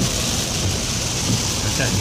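Heavy rain falling on a car's roof and windscreen, heard from inside the cabin as a steady loud hiss, with low road noise from the moving car underneath.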